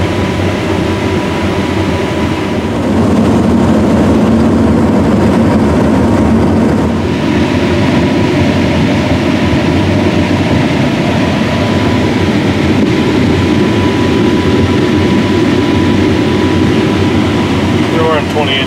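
Claas Lexion 750 Terra-Trac combine harvesting corn, heard from inside its cab: a steady, dense machine din with a thin steady whine. It grows louder about three seconds in and eases back a few seconds later.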